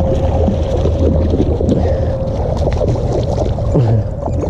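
A hooked smallmouth bass splashing at the water's surface close to the bank as it is reeled in, over a steady low rumble of wind on the microphone.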